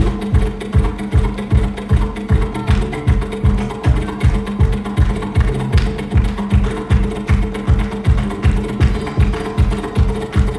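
Instrumental folk music played live by a band: a steady low drum beat about three times a second under sustained low held tones.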